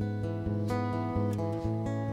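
Live band playing an instrumental passage without vocals: acoustic guitar strumming chords about twice a second over sustained notes.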